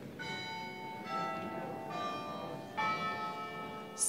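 Church bells chiming four notes about a second apart, each at a different pitch and left to ring on.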